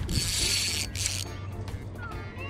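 Spinning reel's drag buzzing as a large fish pulls line off the spool: a high-pitched run lasting about a second, then a brief second burst.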